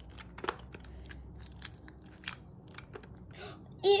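Plastic spoon stirring and scraping thick, sticky slime in a small plastic cup: faint, scattered clicks and crackles.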